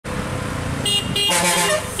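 Vehicle horns beeping at a hairpin bend: two short beeps about a second in, then a longer honk of a different, richer tone, over the low running of traffic engines.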